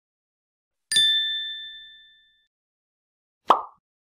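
A bright chime-like 'ding' sound effect about a second in, two clear tones ringing and fading over about a second and a half. It is followed near the end by a short pop as the logo animation goes on.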